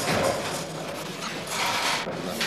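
Irregular clatter of spoons against plates and bowls while people eat.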